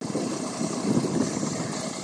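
A concrete mixer truck's engine running steadily.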